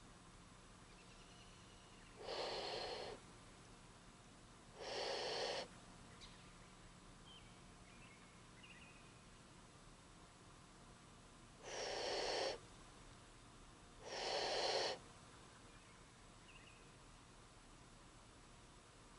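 Four breathy huffs of the black bear challenge call, a snort-wheeze, in two pairs, each just under a second long, traded between a hunter imitating it and a black bear answering back.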